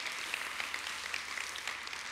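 Congregation applauding with steady clapping.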